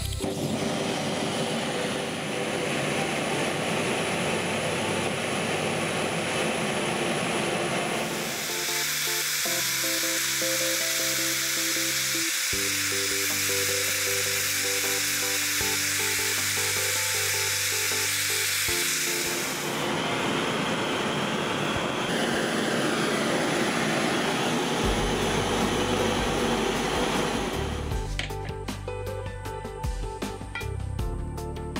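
A propane torch hissing steadily as it heats a steel tray of clock hands to red heat for hardening, over background music. The hiss is brightest and sharpest from about a quarter of the way in to about two-thirds.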